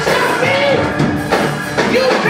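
Live gospel praise music: a drum kit keeping a fast beat under singing, with hand clapping.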